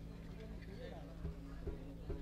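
A person's voice speaking faintly over a steady electrical hum from the stage sound system, with a couple of light knocks in the second half.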